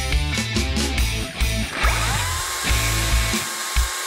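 Background rock music with a steady beat. About two seconds in, the motor of a Makita twin-18V (36V) cordless chainsaw whines up in pitch and then runs steadily.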